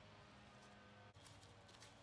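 Near silence: faint steady low hum of room tone, with a brief drop about a second in.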